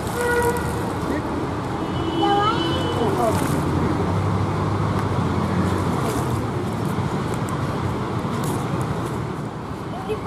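Urban outdoor ambience: a steady bed of traffic noise, a brief vehicle horn toot at the start, and faint voices in the background.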